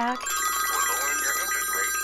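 Several smartphones ringing at once for incoming calls, their electronic ringtones overlapping as a mix of steady held tones at several pitches.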